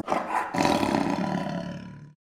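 Closing sound effect of an animated logo intro: a rough, noisy swell with no clear pitch that peaks about half a second in, then fades away and cuts off abruptly at the end.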